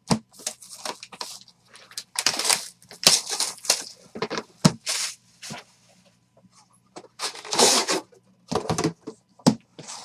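Cardboard packaging being handled and torn open: a run of scraping, rustling and tearing strokes as a Panini Flawless box's silver briefcase is slid out of its cardboard outer box, with a couple of sharp knocks of the case against the table.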